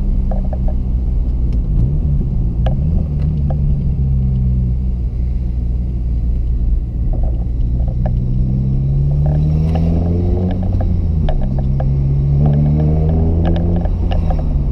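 Exhaust note of a 2006 Honda Civic Si's 2.0-litre four-cylinder with the muffler deleted, heard inside the cabin in normal low-speed driving. It is a steady low drone that rises in pitch about halfway through, dips, then climbs again near the end as the car picks up speed. Light clicks and rattles from a GoPro case with a broken latch run through it.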